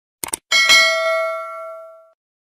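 Two quick mouse-click sound effects, then a notification-bell ding that rings with several clear tones and fades away over about a second and a half.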